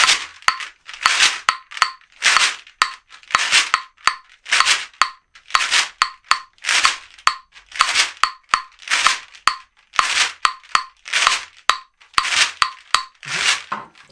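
Shekere, a beaded gourd shaker, played in a steady repeating swish rhythm, the 'kachan' accent pattern used in Cuban rumba. Sharp wooden clicks from claves run along with it.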